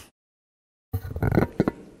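Dead silence for about the first second, then a person's voice starting up with a few clicks and rustle as the microphone picks up again.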